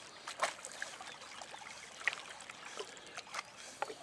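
Quiet lapping and small splashes of lake water, with a few short, sharp drips or slaps scattered through it.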